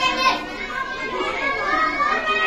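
A group of young children talking at once: overlapping chatter of a whole class.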